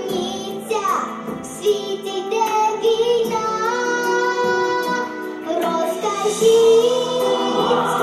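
A young girl singing into a handheld microphone over backing music, holding long, wavering notes.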